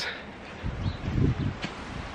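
Wind rumbling on a handheld camera's microphone in a few irregular gusts.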